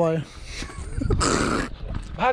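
A man's voice: a drawn-out word that trails off at the start, then a short breathy rush of noise about a second in, with wind rumbling on the microphone.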